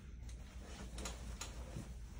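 Quiet room tone: a low steady hum with a few faint, irregularly spaced ticks.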